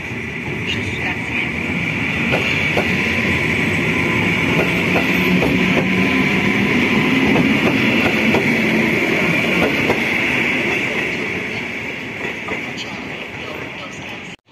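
Polish EN57AL electric multiple unit passing close by, its wheels clicking over the rail joints, with a steady high whine running through the sound. It grows louder to a peak about halfway through, then fades as the train moves away.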